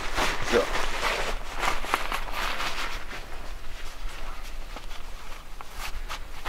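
Nylon door flap of a pop-up toilet tent rustling and crackling as it is pulled open and handled, with a few shuffling footsteps. The rustling is busiest over the first few seconds, then thins out.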